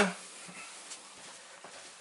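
Quiet room noise with a few faint small clicks, just after a spoken word ends.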